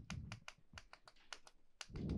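Chalk writing on a blackboard: a quick, irregular run of faint, short taps and scratches as the chalk strikes and drags across the board stroke by stroke.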